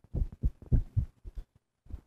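Footsteps close by: a series of dull, low, irregular knocks, about eight in two seconds.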